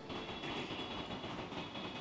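Faint, steady room tone: a low, even hum and hiss in a pause with no voices or music.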